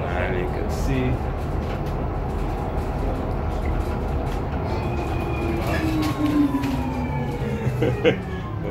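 Inside a city bus while it drives: a steady low rumble of the bus running along the road. Over the last few seconds a whine falls in pitch as the bus slows for the stop.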